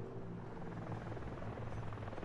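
Helicopter running steadily, a low even drone with no distinct beats.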